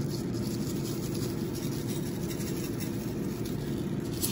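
Dry long-grain white rice sprinkled by hand from a small glass bowl into a glass baking dish, a faint patter of falling grains. Under it runs a steady low hum that holds one level throughout.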